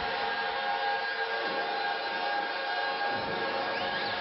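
Eurorack modular synthesizer drone run through a Make Noise Mimeophon delay: several steady held tones, with echoes gliding in pitch through them about a second in and again near the end.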